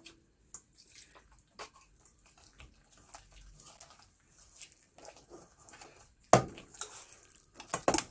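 Wire whisk beating a wet flour-and-water tempura batter in a stainless steel bowl: soft sloshing and scraping with light metal ticks, and one sharp knock about six seconds in.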